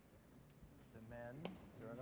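A man's voice speaking faintly, without a microphone, starting about halfway through; a single sharp click comes in the middle of it.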